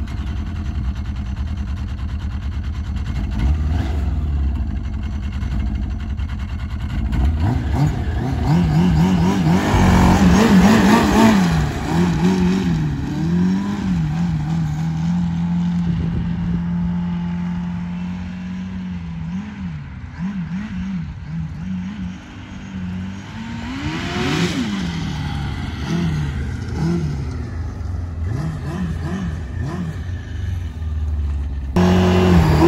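A 2001 Yamaha RX1 snowmobile's 1000cc four-stroke four-cylinder engine, idling at first. From about seven seconds in it revs up and down repeatedly as the sled is ridden over grass, loudest about ten seconds in, with another burst of revs near 24 seconds.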